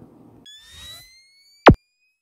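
Electronic transition sound effects for an animated outro: a soft whoosh with faint rising tones about half a second in, then a short, loud zap falling fast in pitch near the end.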